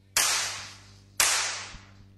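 Two sharp, loud sound-effect hits from the DJ's mix, about a second apart: each a sudden burst of noise that fades away over most of a second.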